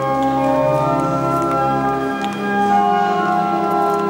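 Organ playing slow, sustained chords, with a deep bass note held for about the first two seconds before the harmony shifts.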